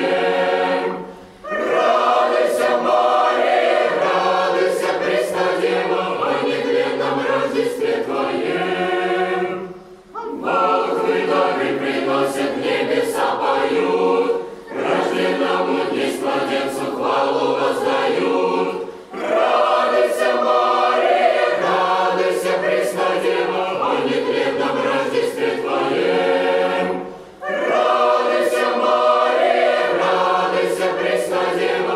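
Boys' choir singing a Christmas carol a cappella, in phrases separated by brief pauses for breath.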